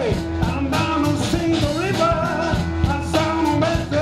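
Live rock band playing: electric guitar, bass guitar and drum kit, with keyboard, over a steady drum beat.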